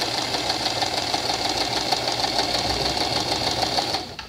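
Domestic electric sewing machine running steadily at an even speed, stitching a straight seam through fabric; it stops abruptly at the very end.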